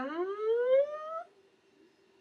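A woman's drawn-out, wordless vocal sound of hesitation, rising steadily in pitch for just over a second before stopping.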